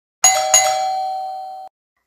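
A chime struck twice in quick succession, a doorbell-like ding-dong, ringing on and slowly fading before it cuts off abruptly shortly before the end.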